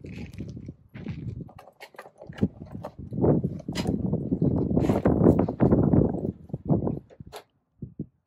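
A large dog sniffing and snuffling right at the microphone, a loud, irregular mix of breathy noise and clicks that is heaviest in the middle seconds. Lighter chewing clicks come before it.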